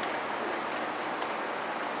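Steady, even hiss of background room noise, with one faint click about a second in.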